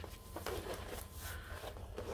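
Faint, irregular rustling and crinkling of a diamond painting canvas and its paper protective sheets as they are handled.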